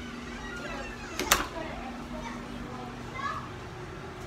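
Faint children's voices in the background over a steady low hum, with a sharp click or knock, two strokes close together, about a second in.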